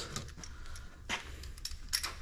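Two light metallic clicks, about a second in and near the end, as a T40 Torx bit is handled and fitted to a screw on a truck door pillar, over a low steady hum.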